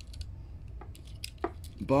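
A few light clicks and taps of a small die-cast toy car being handled and set into a box.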